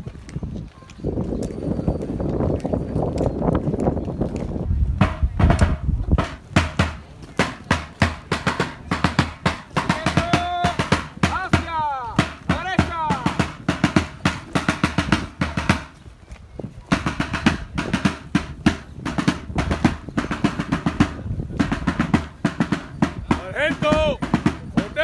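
Military side drum beaten on the march: a fast, continuous cadence of rolls and quick strokes.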